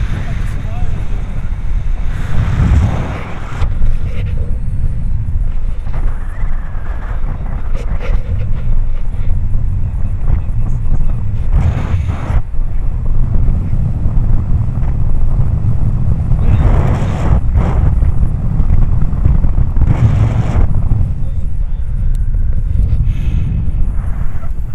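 Wind rushing over the camera's microphone during a paraglider flight: a steady low rumble with a few brief louder gusts.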